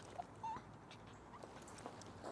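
A small dog whimpering faintly: one short, slightly rising whine about half a second in, with a few faint clicks around it.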